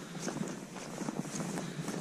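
Footsteps on snow: a few faint, irregular steps.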